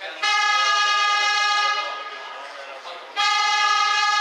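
Two long, steady blasts of a single-pitched horn, each about a second and a half, the second starting about three seconds in.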